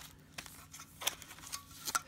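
Light handling noise of a clear plastic case and a foil card pack: a few short sharp clicks and taps, about half a second in, a second in and near the end, with faint rustling between.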